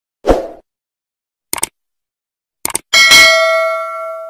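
Subscribe-button animation sound effects: a short thump, then two quick double mouse clicks about a second apart, then a notification-bell ding with several ringing pitches that fades out slowly.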